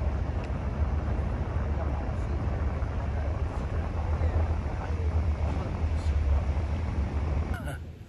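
Wind buffeting the phone's microphone on the deck of a moving river ferry: a heavy, uneven low rumble with a hiss over it, dropping away sharply near the end.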